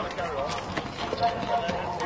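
Indistinct voices of several people talking, with a few sharp clicks.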